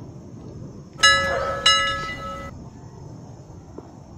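A bell-like chime sound effect struck twice, about a second in and again just over half a second later, ringing for about a second and a half in all, as on a subscribe-button animation's notification bell.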